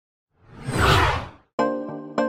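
A whoosh sound effect that swells up and fades away over about a second, followed near the end by the first struck note of a keyboard music intro.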